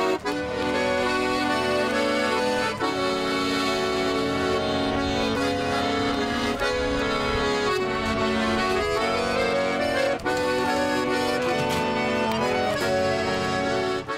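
A garmon, a Russian button accordion, playing a melody of held notes over sustained chords.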